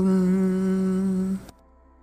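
A single long, steady, humming drone note, held without change, cuts off about one and a half seconds in and leaves silence. It serves as the lead-in to a sung Sanskrit chant.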